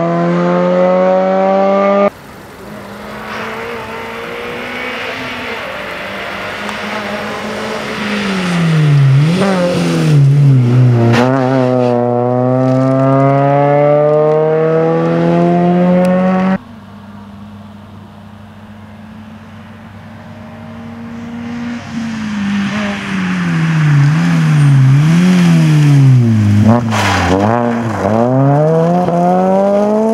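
Suzuki Swift rally car's four-cylinder engine at high revs, climbing in pitch as it accelerates away. Its pitch drops sharply as it comes off the throttle and downshifts, then it climbs again. Near the end the revs swing rapidly up and down through a run of bends on gravel, and the loudness jumps abruptly twice.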